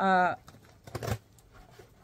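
A woman's voice holding a short vowel at the start, then a few faint clicks and rustles from handling a small cardboard box.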